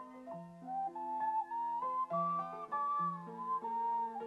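Ocarina playing a melody that climbs step by step and then eases back down, over piano chords.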